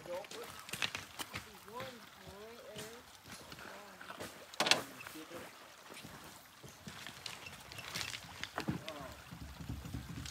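Faint, distant voices, with scattered light clicks and knocks and one sharper knock about five seconds in.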